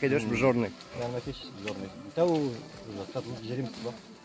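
A man's voice in short, indistinct phrases, talking or humming, with a low droning quality.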